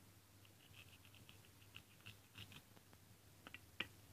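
Very faint handling of plastic toy food on a plastic cutting board: a run of light scratches and ticks, then a few small clicks near the end, the last one the sharpest.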